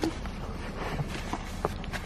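Steady hiss inside a parked car, with a few faint light clicks and handling noises from napkins and cups being moved.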